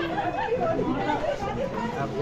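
Several people chatting at once, voices overlapping.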